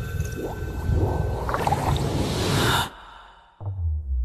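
Cinematic intro sound effects under a countdown animation: a dense rumbling, crackling swell that cuts off suddenly about three seconds in. After a brief near-silent gap, a deep low tone begins near the end as the Dolby logo sound starts.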